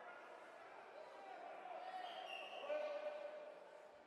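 Faint shouting and calling of distant voices echoing in a large sports hall, swelling about two to three seconds in.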